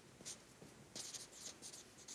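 Marker pen writing on a large paper pad, faint: one short stroke, then a quick run of short scratchy strokes from about a second in.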